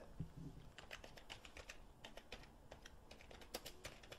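Faint typing on a computer keyboard: a run of quick, irregular key clicks.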